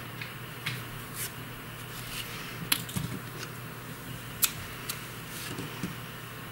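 Yarn and knitted fabric rustling faintly as a yarn end is woven in with a metal darning needle, with a few sharp clicks, two louder ones near the middle, over a steady low hum.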